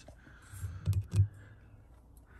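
A few light clicks and two short knocks about a second in, from a rusty Suzuki Jimny rear panhard rod with its rubber end bushing being handled.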